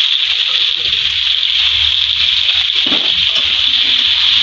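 Pieces of pointed gourd (potol) sizzling in hot oil in a steel kadai, a steady hiss as they are stirred and tossed.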